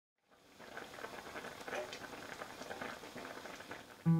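Faint, irregular bubbling and crackling of food simmering in a pot, fading in at the start.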